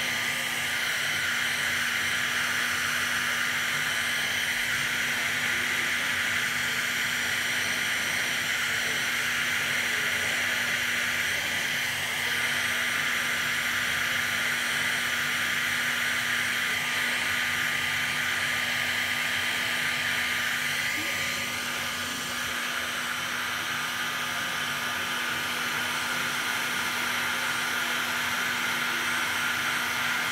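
Electric heat gun running steadily: a constant rush of blown air with a steady hum beneath it, heating clear heat-shrink tubing around a battery pack.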